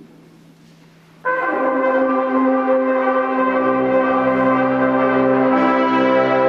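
Brass band of cornets, trombones and tubas striking up a loud held chord about a second in, after quiet room tone. Lower parts join a moment later and again about halfway through, filling the chord out downward.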